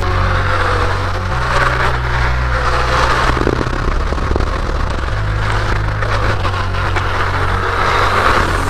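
Electric unicycle riding along a city street: a steady rush of tyre and wind noise that swells and eases. Under it runs a low bass line from background music that steps between notes every second or two.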